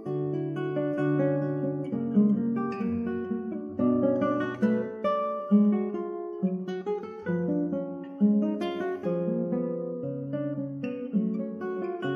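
Solo acoustic guitar music: a melody of plucked notes over lower bass notes, each note starting sharply and fading.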